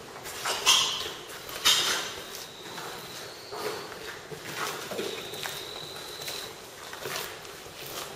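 Slow footsteps on a concrete floor, about one a second, the two loudest about a second and two seconds in.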